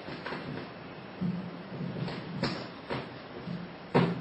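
Microphone handling noise: a few clicks and knocks as a handheld microphone is picked up and handled, the sharpest just before the end, over a faint low murmur in the room.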